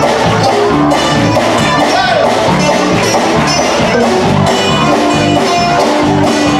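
A live band playing a song: guitar, electric bass and drums at full volume with a steady, repeating bass line.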